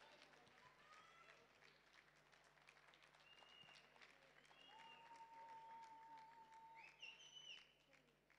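Faint, scattered hand clapping, with faint voices in the background.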